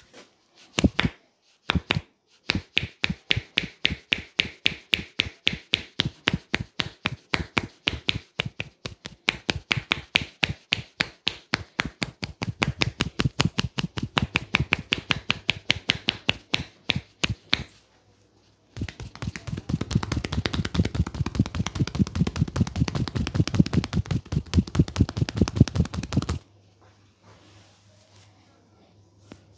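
Percussive massage: hands striking a person's back and shoulders in a steady rhythm of about four blows a second. After a short pause near the middle comes a faster, denser and duller run of blows for about seven seconds, the loudest part.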